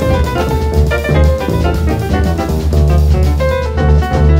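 Jazz piano trio playing a baião: acoustic grand piano with many quick notes, upright bass and drum kit.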